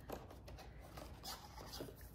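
Faint scratchy rustling of cardboard as a day-one door on a cardboard advent calendar is opened and a plastic coffee pod is pulled out.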